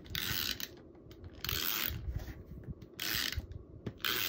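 Three strokes of a Tombow Mono Permanent adhesive tape runner laying adhesive on the back of a paper piece, each a short mechanical rattle of about half a second.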